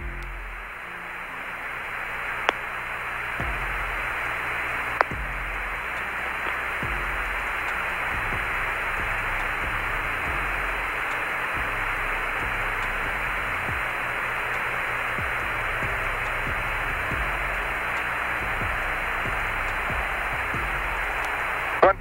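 Steady radio static hiss on the Apollo air-to-ground voice link, cut off above and below like a radio channel, with no voice on it. It swells slightly over the first few seconds and then holds, with two faint clicks early on.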